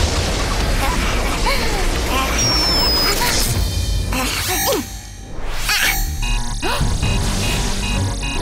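Cartoon sound effects of a continuous laser beam blasting against an energy shield, over dramatic background music, the blast dropping away briefly about five seconds in.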